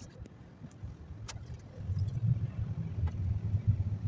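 Low rumble of a moving vehicle heard from inside its cabin, getting clearly louder about two seconds in, with a few light clicks.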